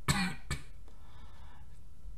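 A man's short throaty cough right at the start, followed by a second brief burst about half a second later, then only a low steady hum.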